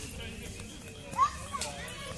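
Young children playing and calling out while running on grass, with one child's high shout about a second in, the loudest sound.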